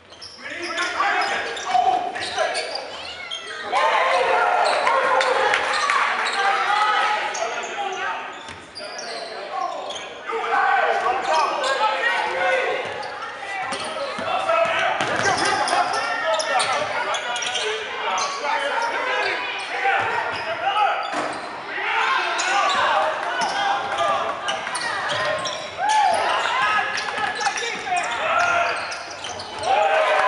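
Basketball game sounds in a large gym: a ball being dribbled on the hardwood floor, with players and spectators calling out.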